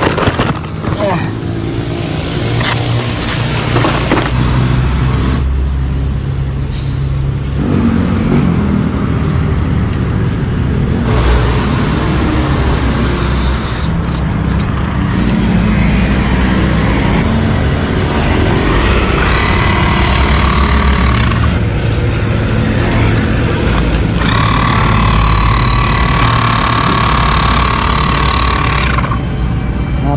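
Portable electric tyre inflator (air compressor) running in two spells, a short one and then a longer one of about five seconds near the end, a steady whine as it pumps up a bicycle inner tube to find the puncture. Steady low traffic-like rumble underneath throughout.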